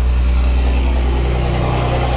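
A steady, loud low hum with several faint steady tones above it, the sound of a running machine, unchanging throughout.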